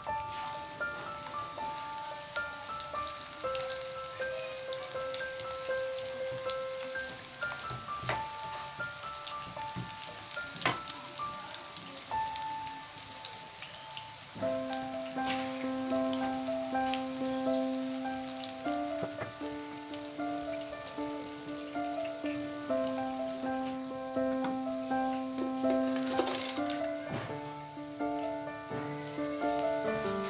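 Potato and spinach pakora batter sizzling as it fries in hot oil in a karahi, under background music of steady held notes that fills out with lower notes about halfway through.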